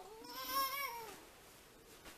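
A young child's whiny cry: one drawn-out wail that rises and falls over about a second, from a three-year-old in the middle of a tantrum.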